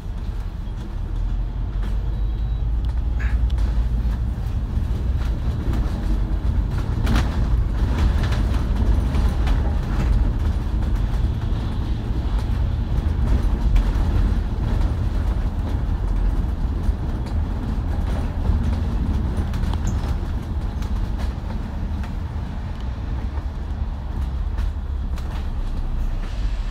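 KMB double-decker bus's diesel engine and drivetrain heard from on board, a steady low rumble while the bus drives along, with a brief louder, rougher stretch about seven seconds in.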